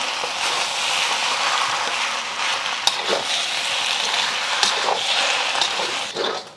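Flat rice noodles, beef and bean sprouts sizzling steadily in a seasoned wok as they are stirred and tossed with a metal wok spatula, with a few light clicks of the spatula against the wok.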